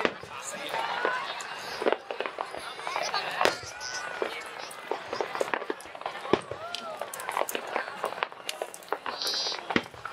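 Aerial fireworks going off in a rapid, irregular series of bangs and crackles, with sharper cracks about two, three and a half, six and nearly ten seconds in. Voices of spectators can be heard through them.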